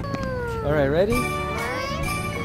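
Background music with held notes, starting after a cut, and a short wavering cry about half a second in that slides up and down in pitch.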